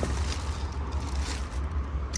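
Clear plastic bag holding a truck's owner's manual rustling and crinkling as a hand handles it, over a steady low rumble.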